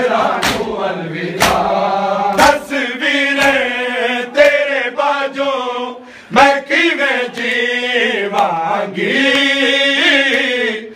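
A large group of men chanting a noha in unison, with loud hand strikes on bare chests (matam) keeping time about once a second.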